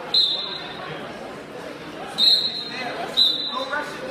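Referee's whistle blown three times: a short blast right at the start, a longer one about two seconds in, and a short one a second later, with voices in the gym behind.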